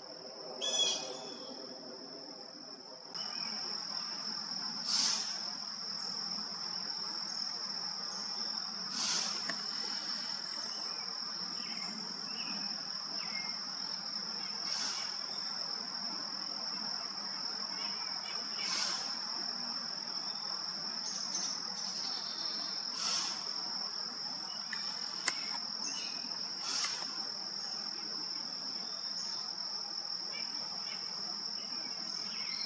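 Steady high-pitched insect drone, with a short, sharp burst of breath about every four seconds: a female white-tailed deer's alarm snorts, blown through the nostrils to scare off a possible predator. The insect drone begins abruptly about three seconds in.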